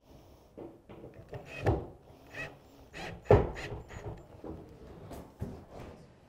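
Irregular knocks and thumps from handling particleboard cupboard panels, the loudest about three seconds in, with lighter taps as locating pins and cam locks are set into the panel's pre-drilled holes.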